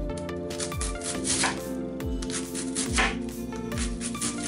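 Chef's knife slicing thinly through a head of white cabbage onto a wooden cutting board, with regular crisp cuts about every 0.7 seconds. Background music plays under the cutting.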